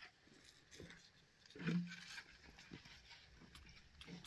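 A brief animal call a little under halfway through, over a few faint scattered clicks.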